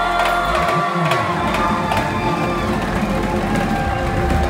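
A live rock band's last chord ringing out, with the crowd cheering and whooping from about half a second in.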